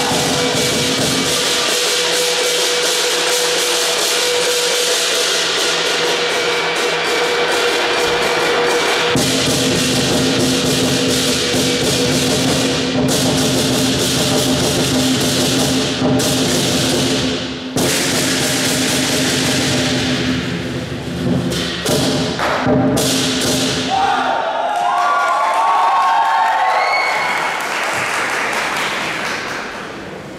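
Lion dance percussion band playing: a large drum pounding under clashing cymbals and a ringing gong. The playing breaks off about three-quarters of the way through, giving way to crowd cheering and applause.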